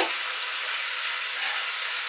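Belly pork in a geera seasoning mixture frying in a stainless-steel pan, a steady sizzle, with one sharp knock of the stirring spoon against the pan at the very start.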